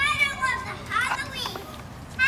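A toddler's high-pitched wordless vocalizing: a short squeal-like call at the start, then more babbling sounds about a second in.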